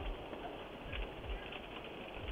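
Doorbell camera audio of a fire at close range: a steady rushing noise with soft, irregular low thumps.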